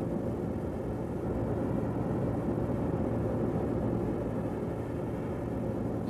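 Jet airliner in flight: a steady, even engine drone with a low hum.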